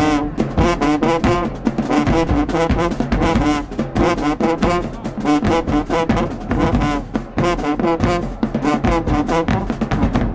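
High school marching band playing from the stands: trumpets, trombones and sousaphones carry a loud brass tune over drum hits.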